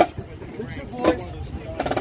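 A large group marching in step, with short shouted cadence calls about once a second, in time with the steps.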